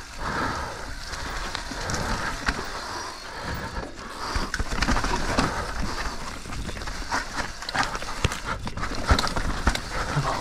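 Mountain bike rolling down a steep dirt trail covered in leaves: tyres crunching over dirt, leaves and rocks, with frequent short clicks and knocks as the bike rattles over the rough ground.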